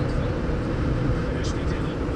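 Steady road and engine rumble of a moving car, heard from inside the cabin.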